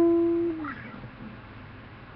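Steel-string acoustic guitar ringing on a single plucked E note, one octave position of E on the fretboard. The note is strongest for about the first half second, then fades away within about a second.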